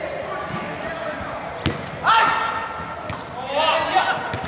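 A football kicked once with a sharp thud about one and a half seconds in, followed by a player's long loud shout and a shorter call near the end, echoing in a large indoor sports hall over the players' background chatter.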